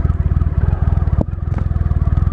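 2012 Triumph Rocket III's 2.3-litre inline three-cylinder engine idling with a steady, rapid low beat, with a brief click a little over a second in.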